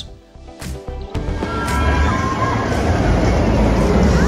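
Music, joined about a second in by a sudden loud, steady rumble of a steel roller coaster train running on its track, with thin high squeals over it.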